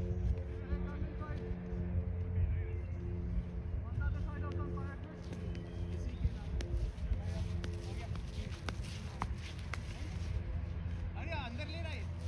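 A steady low hum with a stack of overtones, under a low rumble, with faint distant voices and a few light clicks; voices grow louder near the end.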